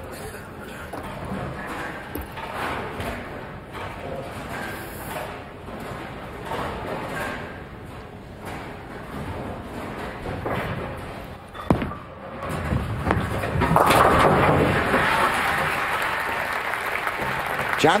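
Bowling ball thrown for a spare: a sharp thud as it lands on the lane, then the crowd loudly cheers and applauds as the spare is converted. Before the throw, only the low murmur of the arena crowd.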